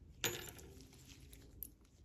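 A small metal part set down on a wooden workbench: one sharp clink with a short ring a quarter second in, then a lighter click about a second and a half later.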